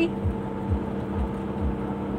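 Semi truck's diesel engine running at a steady drone, heard inside the cab while driving, with road and tyre noise beneath it.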